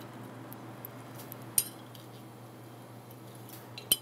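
Metal spatula clinking against a glass jar as cotton seedlings are stirred in alcohol to wash off thrips: a few light, scattered clinks, one sharper about one and a half seconds in, over a steady low hum.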